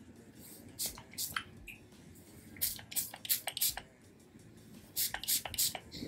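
Small pump spray bottle of soothing scalp spray being spritzed onto the scalp: about ten short hissing sprays, singly and in quick little clusters.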